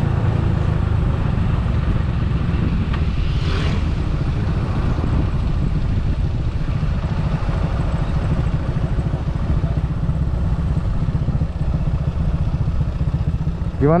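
Motorcycle engine running at low road speed, mixed with steady wind noise on the rider's camera microphone.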